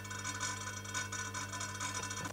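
Quiet background: a steady low electrical hum with faint light ticking.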